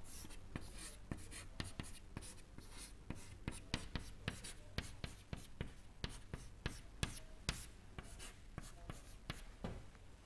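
Chalk writing on a chalkboard: a steady run of faint, irregular taps and short scratches as symbols are written stroke by stroke.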